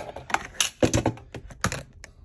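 A quick, irregular run of sharp clicks and taps: hands handling a guitar's plastic pickguard and its wiring close to the microphone.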